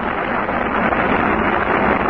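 Saturn V rocket at liftoff: a steady, dull roar with little treble, heard through an old mission broadcast recording.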